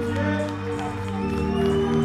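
Music with long held notes over a low bass; the chord changes about a second in.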